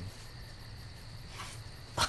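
A pause between speech: faint background hiss and low hum with a steady high-pitched tone running through it, and a faint brief sound near the end.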